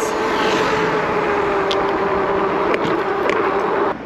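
Fat-tyre e-bike ridden fast on asphalt: steady wind and tyre noise with a whine that sinks slowly in pitch. It cuts off just before the end.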